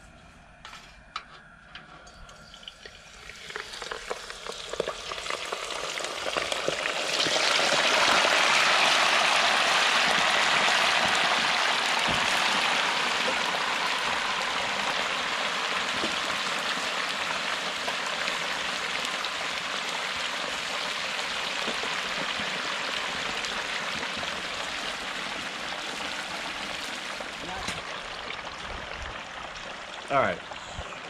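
A whole turkey being lowered on a hook into the hot oil of a propane turkey fryer: a crackling sizzle begins about three seconds in and swells to a loud, full frying boil by about eight seconds, as the oil foams up and comes over the side of the pot. It then eases slowly into a steady fry.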